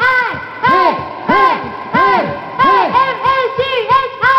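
A woman's amplified voice making short wordless cries into a microphone, each rising and then sliding down in pitch, about two a second.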